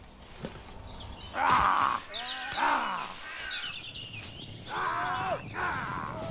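Birds calling in woodland: a run of short calls that rise and fall in pitch, loudest about a second and a half in.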